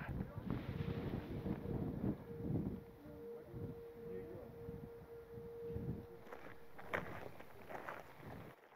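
Wind buffeting the microphone with an uneven low rumble, and a faint steady hum held for several seconds through the middle.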